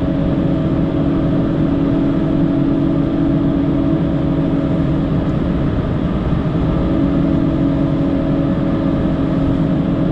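PistenBully 600 snow groomer's diesel engine running steadily under load, heard from inside the cab, with a constant hum over the engine noise.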